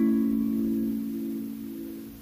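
Acoustic guitar chord left ringing and slowly dying away.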